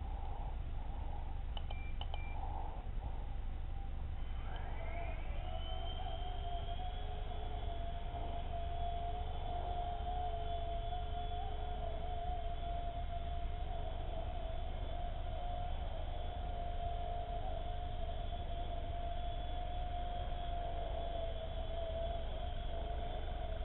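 Xieda 9958 mini quadcopter's electric motors spinning up with a rising whine about four seconds in, then holding a steady whine. Two short beeps come about two seconds in.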